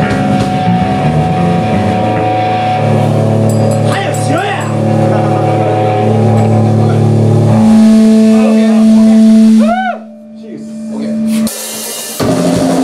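Live rock band with electric guitars and drums holding long sustained chords, with sweeping rises and falls in pitch over them. About ten seconds in the sound drops away sharply, leaving a single held note.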